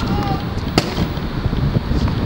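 Wind buffeting the microphone with a steady rumble, and a single sharp knock of a tennis ball about three-quarters of a second in.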